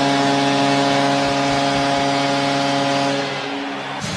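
Arena goal horn sounding one long, steady chord over crowd noise, signalling a home-team goal; it fades out near the end.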